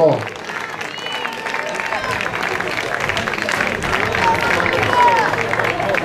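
Audience applauding, with voices from the crowd mixed in; the clapping builds gradually.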